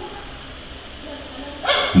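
Low steady background hum of a karaoke sound system, then near the end a man's voice starts into the microphone, amplified through the karaoke digital echo processor and speakers for a sound test.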